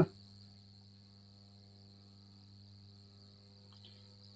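Faint steady background in a pause between words: a low hum with a thin, high-pitched whine above it, unchanging throughout.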